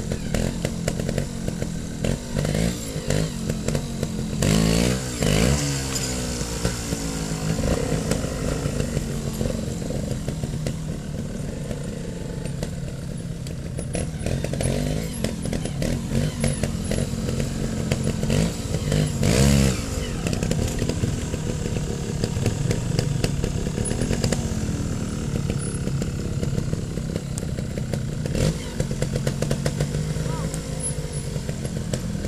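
Trials motorcycle engines idling, with quick throttle blips that rise and fall in pitch about five seconds in and again about twenty seconds in.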